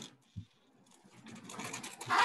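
A sharp click and a low knock, then a scratchy, rustling noise that grows louder over the last second.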